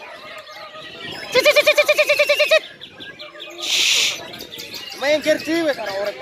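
Caged white-rumped shamas (murai batu) singing, mixed with people's voices calling out. About a second in comes a fast run of repeated pitched notes, a dozen or so a second, lasting just over a second. A brief hiss follows near the middle.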